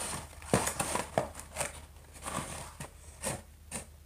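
A multi-disc DVD case being handled and unfolded: a string of light clicks, taps and rustles from the packaging, about nine in all and unevenly spaced.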